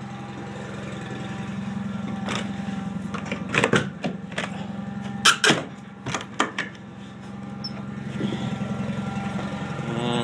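John Deere 318 garden tractor's air-cooled two-cylinder Onan engine running steadily, with a few short knocks in the middle.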